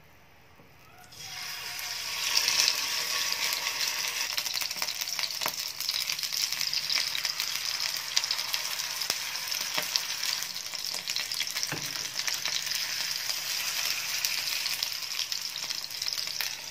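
Batter-coated fish pieces sizzling in shallow hot oil in a frying pan. The sizzle starts suddenly about a second in as the first piece goes in and then runs on steadily, with a few light clicks of the metal spatula against the pan.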